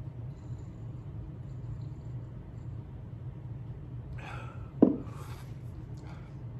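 Steady low hum of room tone while a man drinks beer from a pint glass. About four seconds in comes a breathy exhale, then a short sharp knock as the glass is set down on the bar, then a breathy 'oh'.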